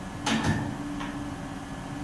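Room tone of a conference hall: a steady low hum, with one short sharp noise about a quarter of a second in.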